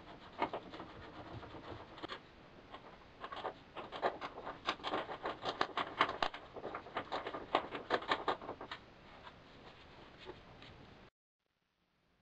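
Faint, irregular scraping, rustling and small clicks of a canvas convertible top being worked by hand around the rear U-channel of a Karmann Ghia body, busiest in the middle few seconds. The sound cuts off suddenly near the end.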